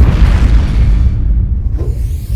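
Cinematic logo-sting sound effect: a sudden deep boom at the start that rumbles on and slowly fades, with a short rising sweep near the end.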